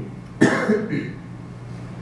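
A man coughs once, sharply, about half a second in.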